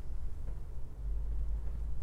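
Low, steady rumbling background hum with nothing else distinct in it.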